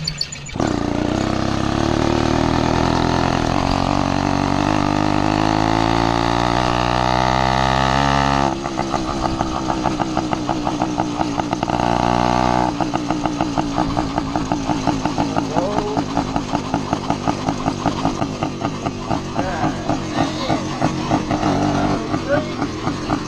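Zeda PK80 66cc two-stroke motorized-bicycle engine running under load, its pitch rising steadily for about eight seconds as the bike accelerates. It then breaks off abruptly to a lower, rapidly pulsing engine note that runs on.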